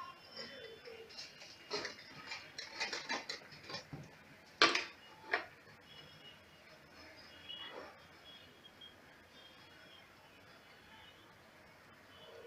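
Fabric being handled and positioned on a sewing machine bed: soft rustling and a few sharp clicks from the machine's parts, the loudest about four and a half seconds in. The machine is not yet running.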